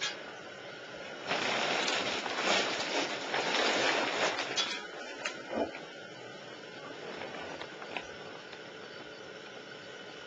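Handling noise from an electric motor and transmission hanging on the chains of a shop crane as it is lowered: about three seconds of scraping and rattling, then a few light knocks.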